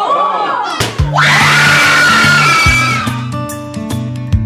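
Excited voices, then a large balloon bursting with a sharp bang a little under a second in, followed by loud, high screaming and cheering from a few people for about two seconds.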